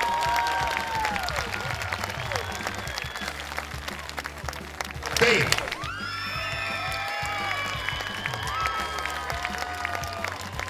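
Music playing with applause and cheering from the audience and contestants, and a louder shout or cheer about five seconds in.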